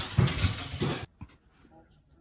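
A Shiba Inu vocalizing in a run of short, noisy bursts that stop abruptly about halfway through. After that there is only a faint voice.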